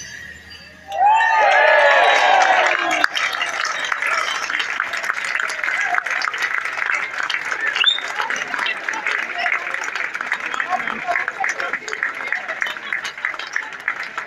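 A crowd whoops and cheers about a second in, then keeps up steady applause mixed with chatter.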